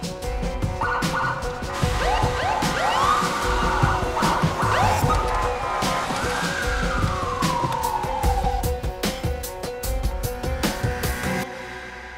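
Police car sirens wailing, several overlapping and rising and falling, from about two seconds in; one long falling wail dies away near nine seconds. Dramatic background music plays throughout.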